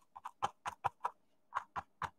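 Scruffy paintbrush pounced onto the painting surface: a run of quick, soft taps, several a second, with a short pause about a second in.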